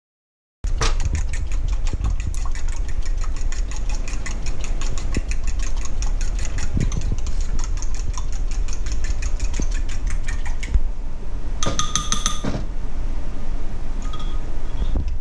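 A utensil whisking pancake batter in a ceramic bowl: rapid, even clicks against the bowl over a steady low rumble. Near the end comes a ringing clink as the utensil strikes the bowl.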